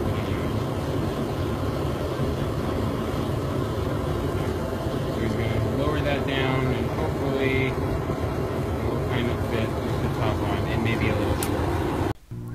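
Homemade black-pipe venturi propane burner firing into a small refractory-lined furnace, a steady rushing noise with no change in level. A sharp click sounds near the end.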